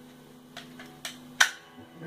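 A few sharp clicks from handling a Beretta 92 pistol, the loudest about one and a half seconds in, over a steady electrical hum.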